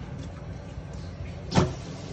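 A single short plastic knock about one and a half seconds in, from a hand striking the flush valve inside an open Caroma cistern, over a steady low background rumble.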